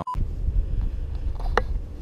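A short beep at the very start, then wind rumbling on an outdoor camera microphone, with a few faint clicks and a brief exclamation about halfway through.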